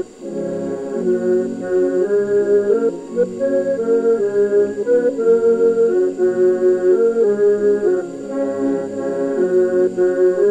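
Piano accordion and church pipe organ playing a carol together in held, sustained notes, with a brief break right at the start.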